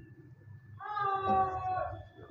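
An animal's call: a single drawn-out cry about a second long, starting about a second in and dipping slightly in pitch toward its end.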